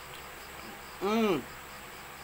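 A man's short closed-mouth hum about a second in, rising then falling in pitch, a reaction while eating fiery siling kutikot chilies. Under it, faint regular insect chirping.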